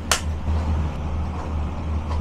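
Water at a rolling boil in a stainless steel pan, bubbling with a steady low rumble. A brief splash just after the start as a block of duck blood is dropped in.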